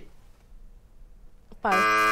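Quiz-show buzzer starting abruptly about one and a half seconds in with a steady, flat-pitched buzz, marking a passed question.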